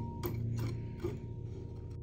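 Three light, evenly spaced clicks in the first second, over a low steady hum.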